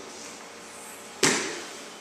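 A single sharp thud a little past a second in, a body landing on a grappling mat as a grappler rocks back onto his back with his partner, dying away quickly.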